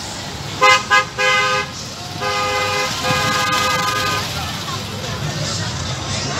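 Pickup truck's horn honking: two short toots and a longer one about a second in, then two longer blasts.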